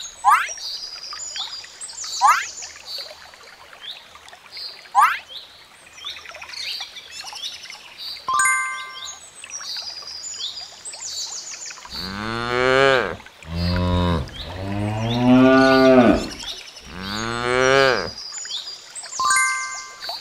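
Cattle mooing: three long, low calls in the second half, the middle one the longest and loudest. Beneath them runs a background of high chirps, with three quick rising whistles in the first five seconds and a short chime-like ding about eight seconds in.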